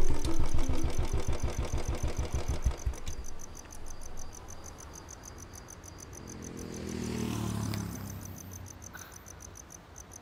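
Motorcycle engine running with an even low thudding beat that fades out after about three seconds as the bike rolls up and stops. Crickets chirp steadily throughout, and a brief low swell falling in pitch comes about seven seconds in.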